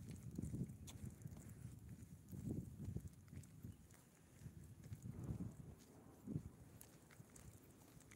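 Faint footsteps while walking on a concrete sidewalk, with low irregular thuds and rumble from the hand-held phone's microphone.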